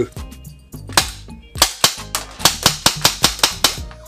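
Airsoft pistol fitted with an AceTech Blaster tracer unit, firing: one shot about a second in, then a quick string of about ten shots, some five a second.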